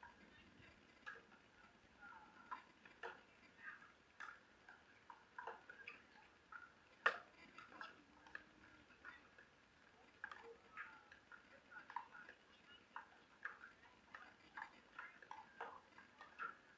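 Pickleball paddles striking a plastic ball: scattered sharp pops, mostly faint, with one much louder hit about seven seconds in.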